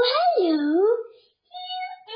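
A young boy's wordless, high-pitched vocalising: one long call that swoops up and then down, then after a short pause a shorter, steadier note near the end.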